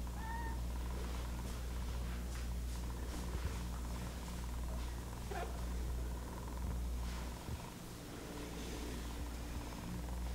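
Domestic cat purring, with a short meow right at the start and another about halfway through.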